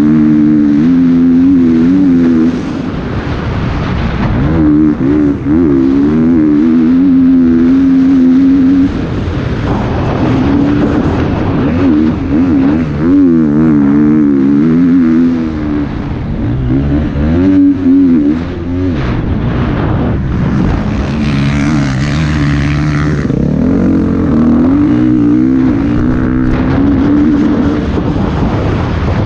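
Dirt bike engine being ridden hard, its note rising and falling with the throttle and dipping briefly every few seconds at gear changes or throttle-off. A rush of hiss joins it about two-thirds of the way through.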